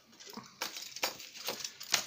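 A few small clicks and light scrapes of hands handling a marker pen and a small brass lock cylinder on a table, the sharpest click near the end.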